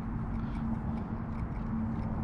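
Steady outdoor background: a low rumble with a constant low hum running under it and a few faint light ticks, with no distinct event.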